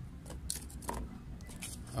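Handling noise from a clear plastic seedling container being picked up and moved: a few light clicks and rattles, spaced out, over a low steady rumble.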